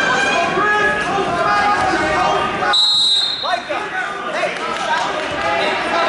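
Spectators' voices and shouting fill a gym during a wrestling bout. About three seconds in, a referee's whistle sounds once, a short high steady blast lasting about half a second.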